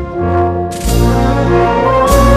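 Brass band playing sustained brass chords over a deep bass, with a cymbal crash about three-quarters of a second in.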